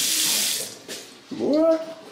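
Water running from a faucet into a glass vessel sink, then turned off under a second in. A brief voice follows near the end.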